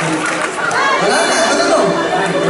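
Many voices talking and calling out at once: audience chatter in a concert hall.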